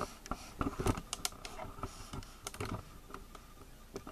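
A scatter of light, irregular clicks and knocks: handling noise from a handheld camera being moved and items shifted on a workbench. They are thickest in the first three seconds and thin out near the end.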